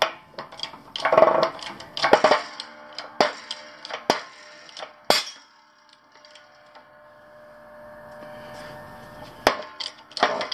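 Shop press pressing a new wheel bearing into an ATV's front steering knuckle: a run of sharp metal clicks and knocks with a few louder scraping bursts, then a faint steady tone for a few seconds, ending in a sharp click.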